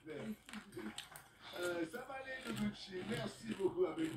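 Voices from a television playing in the room: French-language programme talk.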